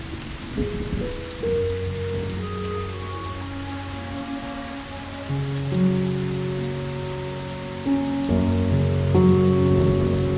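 Steady rain with scattered drops, over slow meditation music of long held notes that shift every few seconds. The music swells louder near the end.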